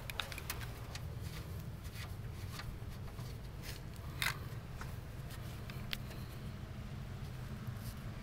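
Scattered light clicks and taps of hand tools working on the radiator mounting bolts, over a low steady hum. One sharper click comes about four seconds in.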